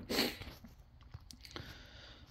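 Quiet background hiss with a few faint scattered clicks and crackles after a short noisy burst at the very start.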